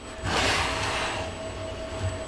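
Electric drill running at high speed with a small number 41 (2.4 mm) bit, drilling a pilot hole into 3D-printed plastic: a steady motor whine, with cutting noise that swells about a quarter second in and then fades gradually.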